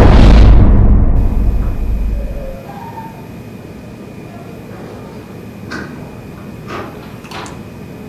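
A sudden loud, deep boom hit, a dramatic film sound effect, cuts off the music and rumbles away over about two seconds. After it comes quiet room tone with three faint clicks near the end.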